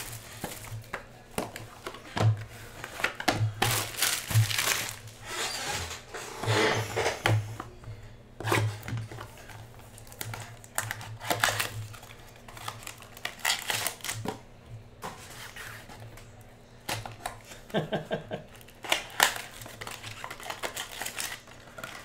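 Cellophane shrink-wrap crinkling and tearing in irregular bursts as it is peeled off a cardboard trading-card box.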